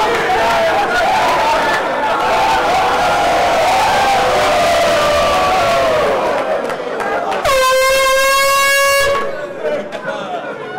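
A roomful of football players shouting and cheering together, then about seven and a half seconds in a single loud air horn blast, one steady tone held for under two seconds before it cuts off.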